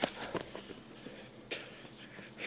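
Faint field sound with a few scattered thuds: footfalls of runners on a dusty dirt trail.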